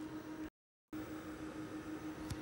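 Steady low electrical hum at one pitch over faint hiss, briefly cut to total silence about half a second in where the recording is edited, then carrying on with a couple of faint clicks.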